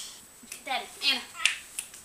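A baby's short, high-pitched wordless vocalizing, followed by two sharp clicks near the end.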